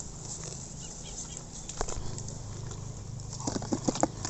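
Fresh strawberries dropped into a thin clear plastic tub, giving a quick cluster of light knocks near the end, with a single click a couple of seconds before.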